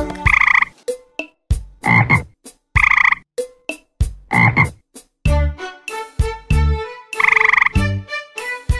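Frog croaking: a series of short, loud croaks, about one a second.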